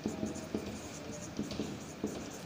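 Marker pen writing on a whiteboard: a run of short, faint strokes.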